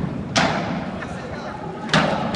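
Two sharp bangs about a second and a half apart, each with a short echo after it, over a steady background with voices in it.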